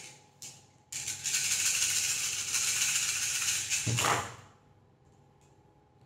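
Small divination pieces rattled together in cupped hands for about three seconds, shaken to be cast for an astrological reading. The rattle starts suddenly about a second in and dies away about four seconds in.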